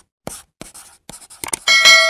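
Pencil-scribbling sound effect in a series of short scratchy strokes, then a bright ringing chime near the end.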